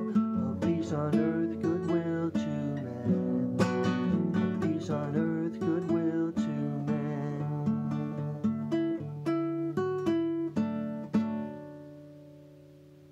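Acoustic guitar playing an instrumental close of picked notes and chords, ending on a final chord struck near the end and left to ring out.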